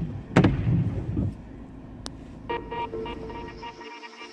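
Low rumble of a car's interior with a short loud burst in the first second, then steady background music coming in about two and a half seconds in.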